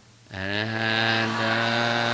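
Buddhist devotional chanting by a man's voice, beginning after a short pause about a third of a second in and holding long, steady notes.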